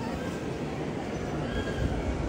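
Crowd noise from a large audience, indistinct voices with a faint high rising call near the end.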